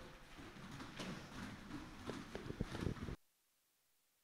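Gloved punches and kicks hitting heavy bags and pads, with feet moving on gym mats, a quick run of sharper hits near the end. The sound cuts off abruptly about three seconds in.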